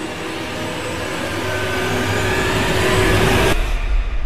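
Whoosh sound effect for an animated subscribe button: a dense rushing noise that starts suddenly and builds for about three and a half seconds. Near the end the hiss cuts off, and a low rumble carries on.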